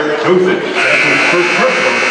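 Basketball arena game horn sounding one long, steady blast that starts a little under a second in, marking a stoppage in play.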